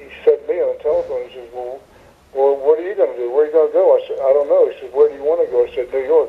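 Speech only: a person talking in animated bursts, with a narrow, radio-like sound.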